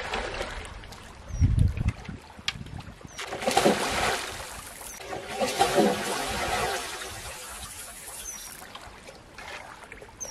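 A large hooked rohu thrashing at the water's surface, throwing up two bursts of splashing about three and a half and five and a half seconds in. A dull low thump comes shortly before them.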